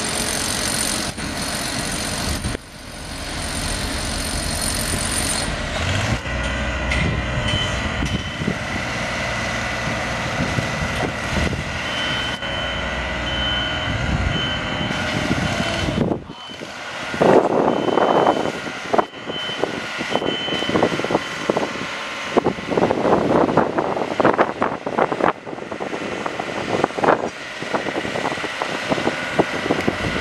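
Construction-site heavy machinery: an engine drone runs steadily through the first half, with a faint high beep repeating for a few seconds near the middle. After a sudden change about halfway through, an irregular, surging noise takes over.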